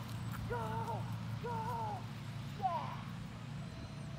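A handler's voice giving two drawn-out shouted cues to a dog on an agility course, then a shorter falling call near the end, over a steady low hum.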